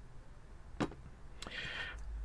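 A ceramic lid handled on a pot: two light clicks about a second apart, then a brief scrape as the lid is lifted off.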